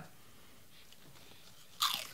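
Faint crunching and chewing of a crisp fried pork rind, with a louder, sharper burst near the end.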